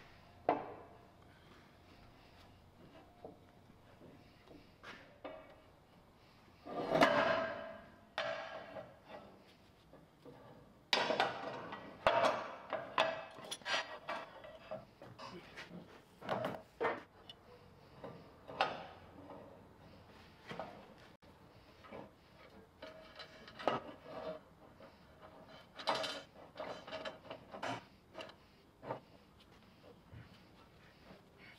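Irregular metal clanks and hammer taps on steel as bar clamps are set and a steel plate is knocked into line on a skid steer's loader arm. Some of the knocks ring briefly, with the loudest clusters about seven seconds in and from about eleven to fourteen seconds.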